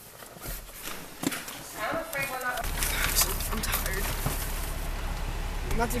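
Knocks and clicks of a camera being handled inside a car, with a brief voice. About two and a half seconds in, a steady low car-cabin rumble starts suddenly and carries on under further clicks.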